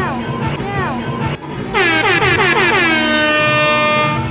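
Background music, then about a second and a half in a loud air horn sound effect comes in as part of an MLG meme edit. Its pitch drops and then holds steady, and it cuts off at the end.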